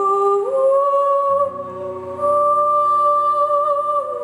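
Live rock band playing a slow passage: a held, slightly wavering lead melody that slides up a step just after the start, over sustained chords, with a low bass note coming in about a second in.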